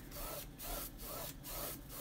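Paintbrush bristles scrubbing back and forth across a stretched canvas, a soft, faint swish about twice a second, as white paint is blended up into the blue sky.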